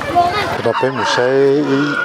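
A rooster crowing once: a long drawn-out call starting about half a second in and lasting over a second, with people talking around it.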